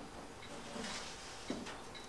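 Faint scraping of a tray being slid into a nine-tray food dehydrator, with a light knock about one and a half seconds in.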